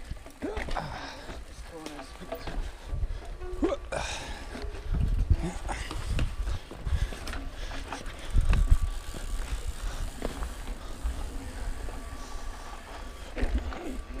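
Ibis Mojo HDR 650 mountain bike rolling down a rough dirt trail: tyre rumble and wind buffeting on the chest-mounted camera, with clatter and rattle of the bike over bumps. Heavy jolts come about five seconds in and again a little past eight seconds.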